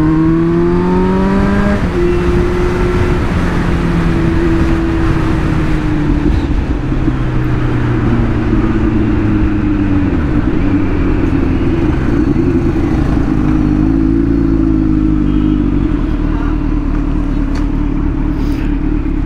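Motorcycle engine heard from the rider's seat while under way. Its note climbs for about two seconds, drops sharply, then runs at fairly steady revs, dipping and climbing again about halfway through as the bike slows and picks up speed.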